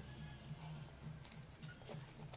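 Crunching and chewing of crisp green mango slices, with a few sharp crisp clicks about halfway through and near the end, over a low steady hum.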